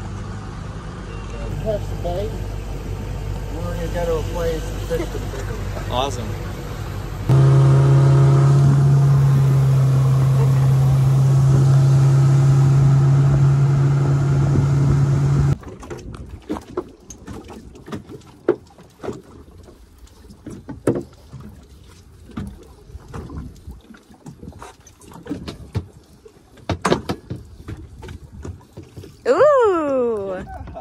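A boat's outboard motor: a low rumble at slow harbor speed, then a loud, steady drone under way for about eight seconds that cuts off suddenly. After that it is quieter, with scattered clicks and knocks on the boat while a fish is played on rod and reel.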